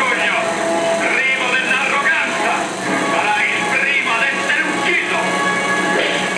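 Old film soundtrack from a 16mm print: orchestral music with voices over it, thin-sounding with no deep bass.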